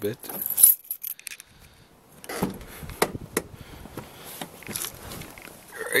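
Car keys jangling, then from about two seconds in a run of irregular clicks and knocks as the car door is opened and someone gets into the driver's seat.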